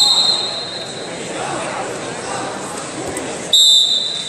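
Two short, shrill blasts of a referee's whistle, one right at the start and a louder one about three and a half seconds in, over the chatter of a sports hall.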